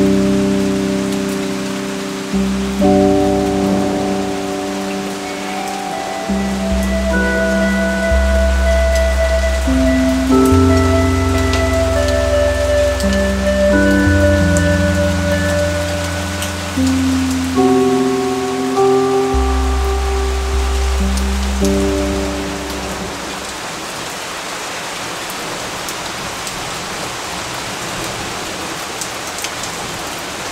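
Steady rain falling, with soft, slow music of long held chords and low bass notes laid over it. The music fades out about three-quarters of the way through, leaving the rain alone.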